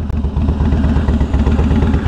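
Motorcycle engine idling with a steady, evenly pulsing beat.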